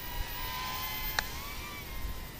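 Thin, steady whine of a small brushed-motor toy quadcopter's motors and propellers in flight, its pitch wavering up and down a little about halfway through. A single sharp click falls a little past the middle.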